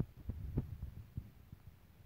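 Faint, irregular low thuds from a phone being handled, fingers tapping and scrolling on its touchscreen, picked up by the phone's own microphone.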